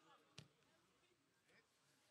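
A football kicked once: a single sharp thud about half a second in, with faint open-air background around it.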